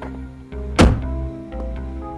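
A car door shutting with one heavy thunk a little under a second in, over soft background music.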